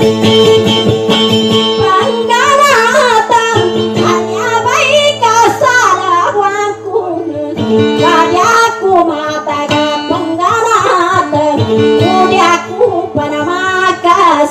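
Dayunday song: a woman sings a high, wavering, ornamented line to her own acoustic guitar, which keeps up steady sustained notes underneath. The guitar plays alone for about the first two seconds before the voice comes in.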